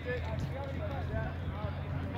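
Indistinct voices of several people talking and calling at a distance, over a steady low rumble.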